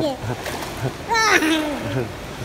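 Pool water splashing around people in the water. About a second in comes a loud, high-pitched vocal cry whose pitch slides steeply down.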